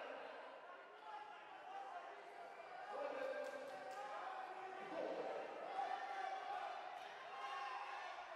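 Faint, echoing sound of a sports hall during a karate bout: distant voices calling out from around the mat, with a few soft thuds.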